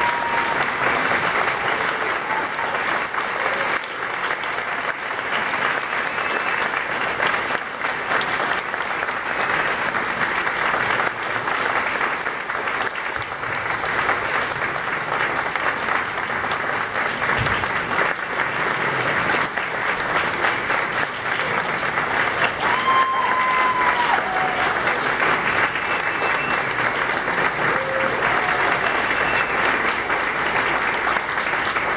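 A concert audience applauding steadily and loudly, with a couple of short whoops rising above the clapping, one at the start and one about two-thirds of the way through.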